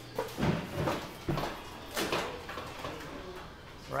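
A few soft, irregular knocks and rustles of handling noise as the camera is moved. No motor is running, because the auger motor is not yet wired.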